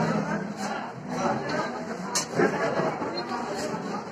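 Several people talking at once in a crowded, echoing room, with a sharp click about two seconds in.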